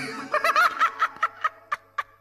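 A man laughing hard in quick, rhythmic bursts, about four a second, that grow fainter.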